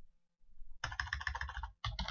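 Computer keyboard typing: a rapid run of keystrokes starting about half a second in, with a brief gap just before the end, as characters of an SQL command are deleted with backspace and retyped.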